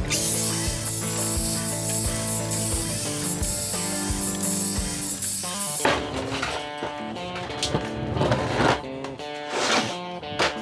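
Guitar background music, with a hissing saw noise over it for about the first six seconds: a sliding miter saw cutting pallet boards. The saw noise cuts off suddenly, leaving the music.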